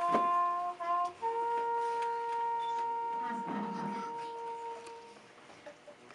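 Muted trumpet playing a solo: two short notes, then one long held higher note of about four seconds that ends about five seconds in.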